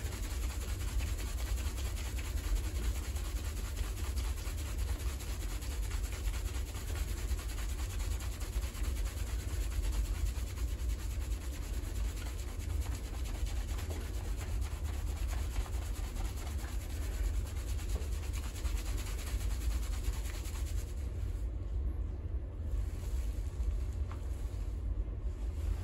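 Fingers vigorously scrubbing a thickly lathered scalp during a seated salon shampoo: a continuous wet, crackling rub of shampoo foam and hair, unbroken throughout, over a steady low rumble.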